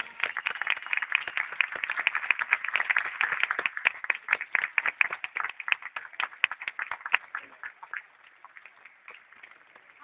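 Theatre audience applauding. The clapping thins out about seven seconds in and has died away a second later.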